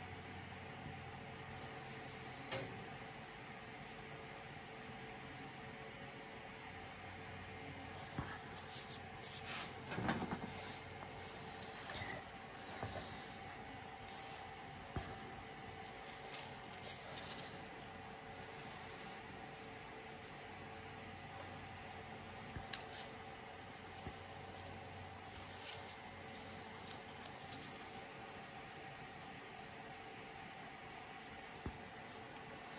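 Quiet room tone with a steady faint hum, broken by scattered soft rustles, light taps and rubbing as a painting tool is worked over a wet canvas and the canvas is handled; the handling noises are busiest through the middle of the stretch.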